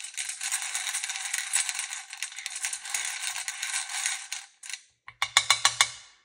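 Small beads rattling and clattering continuously in a metal muffin-tin cup as a brush tool stirs through them, then, near the end, a quick run of about eight sharp clicks.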